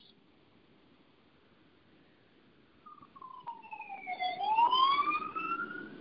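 A few seconds of near silence, then a faint wailing tone that slides slowly down in pitch and back up again.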